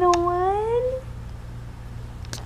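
A 12-week-old baby cooing: one drawn-out vocal sound that dips in pitch and rises again, ending about a second in.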